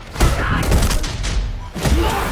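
Heavy impacts of a film fight scene: a hard hit a moment in, a stretch of crashing and debris, and a second heavy thud near the end as a body smashes through a brick-and-plaster wall, all over deep trailer music.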